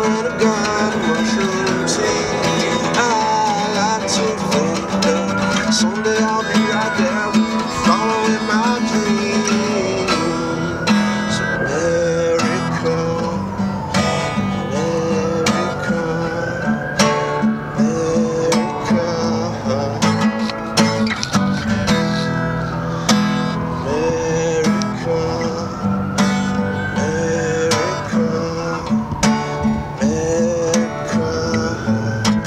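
Acoustic guitar music in an instrumental passage of a song: the guitar is picked and strummed over a steady beat, with a higher melody line rising and falling in slow arcs about every three seconds.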